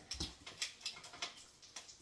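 A set of measuring spoons on their ring clicking and clinking as they are handled and a spoon is worked off the ring: a quick, irregular run of small sharp clicks.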